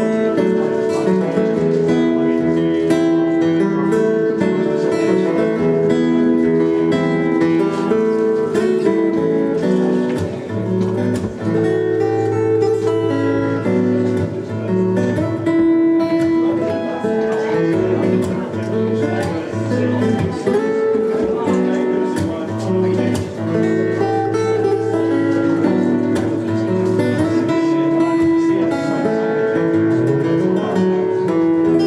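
Acoustic guitar played live, notes and chords ringing continuously through a song.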